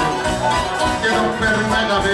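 Live band music with a man singing into a microphone, from a Greek satirical song performed on stage.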